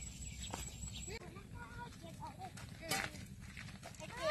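Faint children's voices chattering outdoors, short and wavering, with two sharp taps, one about half a second in and one near three seconds, over a low steady rumble.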